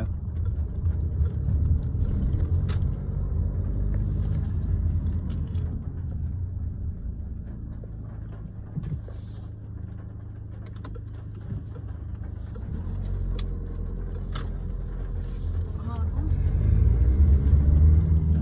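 Car engine and road noise heard from inside the cabin of a manual-gearbox car in second gear. The engine note eases off through the middle as the car slows, then rises and grows louder near the end as it pulls away, with a few scattered clicks.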